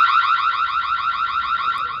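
Ring spotlight security camera's built-in siren sounding: a loud electronic wail that warbles rapidly up and down several times a second, easing off a little near the end.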